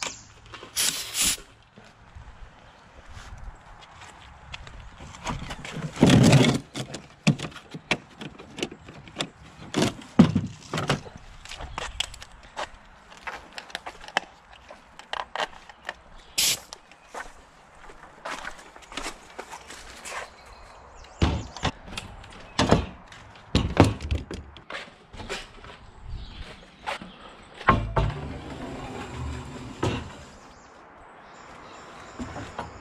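Short bursts of compressed air hissing as an air hose is snapped into a pancake compressor's quick-coupler, about a second in, and again briefly when the hose is coupled to a coil nailer. Around these come many knocks, thuds and clatters of tools and lumber being handled and footsteps, the loudest thud about six seconds in.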